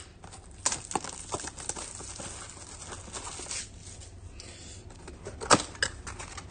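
Hands unwrapping and opening a cardboard trading-card hobby box: faint rustling and crinkling with scattered small clicks, and a sharper click near the end as the lid comes open.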